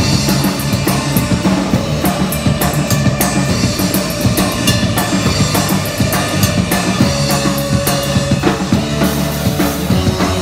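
A live instrumental surf-punk band playing loudly: electric guitars and bass over a drum kit, with the drums and cymbals up front.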